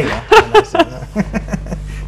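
A woman laughing in a few short, loud bursts in the first second, then trailing off quieter.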